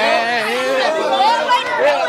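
Several people talking loudly over one another, their voices overlapping so that no single speaker stands out.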